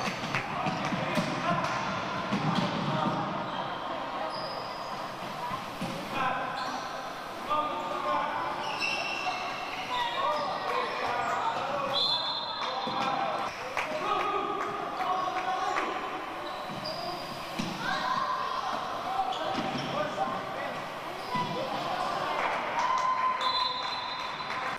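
Indoor handball game: the ball bouncing on a wooden court, shoes squeaking and players shouting, all echoing in a large sports hall.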